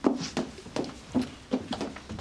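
Hurried footsteps and bustle across a room: a quick, uneven run of short knocks.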